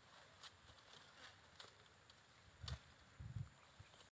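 Near silence with a few faint soft thumps and light clicks, the sound of water buffalo shifting their hooves on grass; the two clearest thumps come late.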